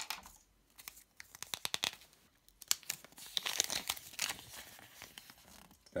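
A small folded paper instruction leaflet from a Kinder Surprise capsule being unfolded and flattened by hand: a run of crackles and small clicks, with the densest crinkling in the middle.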